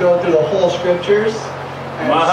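Speech only: a man talking over a microphone, with a steady low hum underneath.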